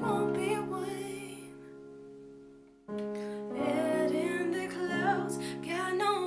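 A female voice sings over piano chords played on an electronic keyboard. About a second and a half in, the sound dies away almost to silence. Just before three seconds, a new chord comes in abruptly and the singing resumes.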